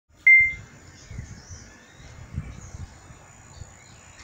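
A single short, high-pitched electronic beep just after the start, typical of a phone camera's start-of-recording tone, followed by faint low rumbling.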